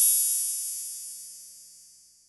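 Synthesized logo-intro sting: a high, ringing chord that fades away steadily after a rising sweep reaches its peak.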